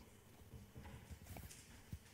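Near silence: room tone with a few faint low knocks and one short click near the end.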